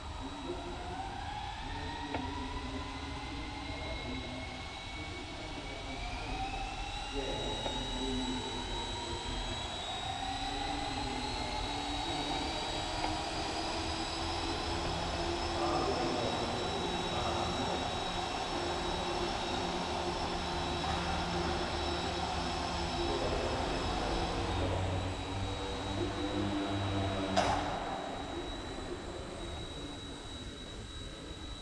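Eachine E129 RC helicopter's electric motor and rotor whining, rising steadily in pitch for about the first ten seconds as it spools up, then holding a steady pitch in flight. The whine eases near the end, and there is a sharp click shortly before the end.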